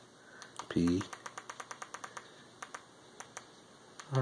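Rapid clicking of remote-control buttons, pressed in quick runs of about seven a second, as the cursor is stepped across an on-screen keyboard to type a web address. A brief vocal sound about a second in is louder than the clicks.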